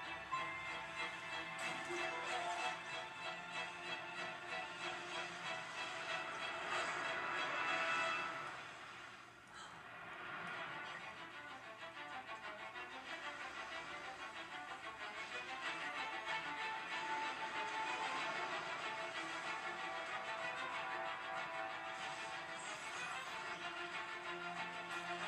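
Film soundtrack music playing through a television's speaker, picked up across a room. It swells about eight seconds in, drops away briefly, then builds again.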